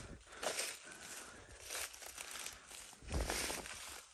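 Footsteps rustling through dry fallen leaves and grass, a few irregular steps, the loudest about three seconds in.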